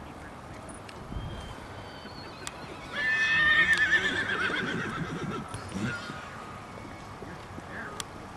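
A horse whinnying about three seconds in: one long, loud call that wavers and falls in pitch, over faint hoofbeats in sand.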